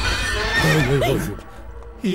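A horse neighing, with music underneath.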